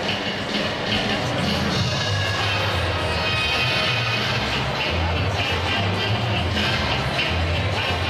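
Ballroom dance music played over loudspeakers in a large, echoing gym hall.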